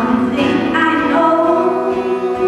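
Live music: a woman singing long held notes into a microphone, accompanied by an acoustic guitar.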